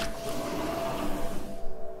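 Sci-fi hatch door opening sound effect: a sharp click, then a hiss of rushing air lasting about two seconds over a steady ambient drone.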